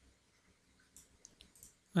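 A few faint computer mouse clicks, mostly in the second half, with near quiet between them.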